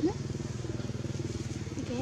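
A small engine running steadily at an even pitch, with a short rising squeak at the very start.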